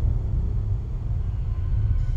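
A low, steady rumble: the bass drone of a suspense score, left running after the higher notes of the music fade out.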